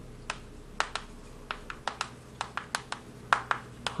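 Chalk writing on a blackboard: an irregular run of sharp taps and ticks as the chalk strikes the board, about four a second.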